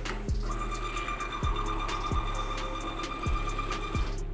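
Gprinter GP-1224T thermal transfer label printer running a print job: its feed motor gives a steady high whine that starts about half a second in and cuts off near the end, at a print speed of 6 inches per second. Background music with a steady beat plays under it.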